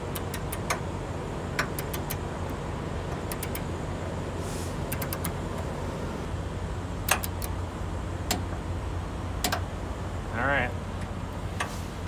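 Ratchet of a torque wrench clicking in short runs as a hitch bolt is tightened toward 60 foot-pounds, over a steady low hum of vehicle noise.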